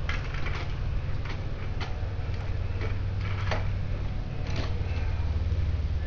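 Plastic LEGO bricks clicking and rattling irregularly as the assembled model is handled and turned, over a steady low hum.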